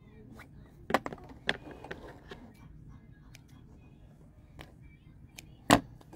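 Scattered light clicks and rustles as sewn fabric is pulled free from under a sewing machine's presser foot and handled, with one sharp click near the end.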